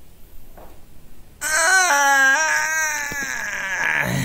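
A loud, high-pitched wailing cry, like a crying baby, starts about a second and a half in and carries on, wavering and slowly falling in pitch.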